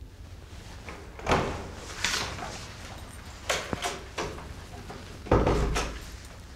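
A door opening and shutting: a string of knocks and clunks over a few seconds, the loudest and heaviest near the end.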